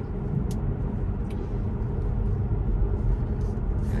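Steady road and tyre rumble inside a Tesla's cabin while it cruises at about 42 mph. There is no engine note, only an even low rumble.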